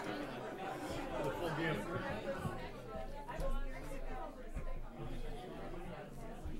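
Murmur of many people talking at once: overlapping conversations in a crowded room.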